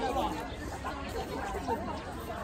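Indistinct chatter of several people talking at once in the background, no single voice clear.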